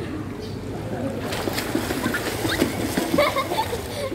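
Pool water splashing as a child plunges forward and swims in shallow water, starting about a second in, with children's voices over it.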